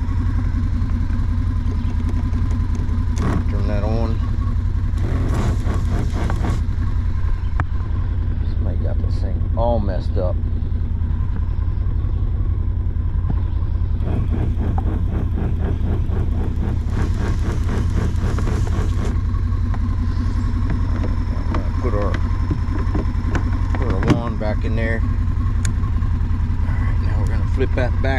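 A side-by-side UTV's engine idling steadily, with the small electric diaphragm pump of the bed-mounted sprayer running. A couple of times a few seconds of hiss come as the spray wand is triggered.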